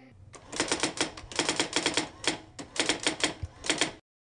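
A rapid run of sharp clicking strikes in irregular clusters, about twenty in all, that cuts off abruptly at the end.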